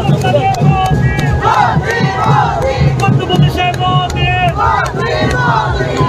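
A crowd of women chanting the slogan "Modi, Modi" in short repeated shouts, with hand claps.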